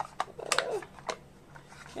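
Small laser-cut plywood box handled in the hand, its tight-fitting lid pressed on: a handful of light wooden clicks and taps.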